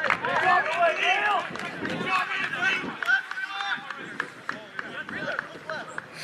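Several indistinct voices of rugby players shouting and calling to each other on the field during play, overlapping, with many short clicks mixed in.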